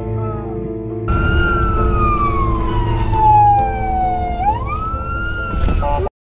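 Background music. About a second in, a fire-rescue vehicle's siren comes in with road noise: one long falling wail, then a quick rise, cut off near the end.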